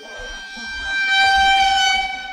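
A steady horn-like tone at one pitch, with bright overtones, swelling in over the first second and then held loud.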